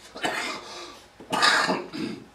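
A person coughing twice, about a second apart; each cough lasts around half a second.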